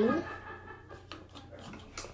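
Hand kneading thick soap-and-salt slime in a bowl, faint and irregular sticky sounds, after the end of a spoken word at the start.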